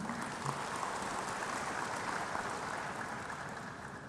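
Audience applause: an even, steady clapping that thins slightly near the end.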